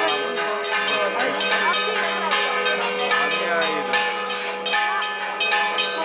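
Church bells ringing a rapid, continuous peal, the strokes coming close together so that their tones overlap and hang on.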